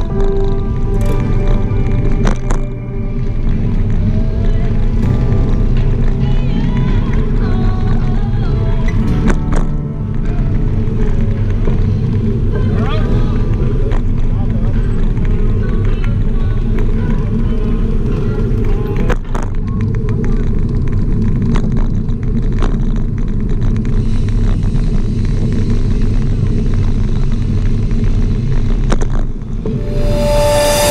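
Music with a singing voice over a heavy, continuous low end.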